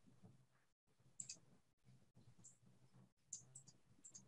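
Near silence broken by a few faint, scattered clicks from computer mouse and keyboard use during copy-and-paste, the clearest about a second in and a quick cluster after three seconds.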